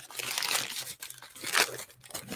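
Packaging crinkling and rustling as it is handled, an irregular crackle with a few sharper crinkles.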